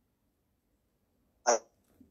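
Near silence for about a second and a half, then one short voiced sound from a man, a single brief syllable.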